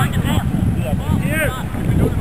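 Wind buffeting the camcorder microphone, a continuous uneven low rumble, with a few brief distant shouted voices over it.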